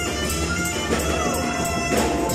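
Live band music: a trumpet and a saxophone playing together, one long held note starting about a second in, over bass and a steady beat.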